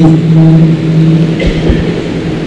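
A man's amplified voice ending a long held note of Quran recitation, the note trailing away within the first second. A few low thumps follow about a second and a half in as the microphone is handled.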